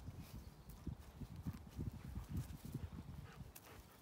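A pony pulling hay from a hay rack and chewing it. Faint, irregular soft thuds and crackling.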